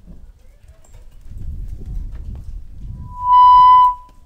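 Public-address microphone feedback: a loud, steady high-pitched squeal lasting under a second near the end, set off as a handheld microphone is picked up over a low rumble of handling and open-air noise.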